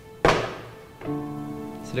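A document folder slapped down on a desk: one sharp thunk about a quarter second in, dying away quickly. About a second in, a steady held note of background music comes in.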